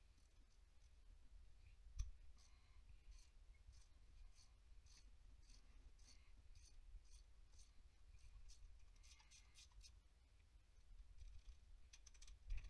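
Near silence with faint, light metallic clicks, two or three a second through the middle, and one sharper knock about two seconds in: hand tools and loose engine bolts being handled.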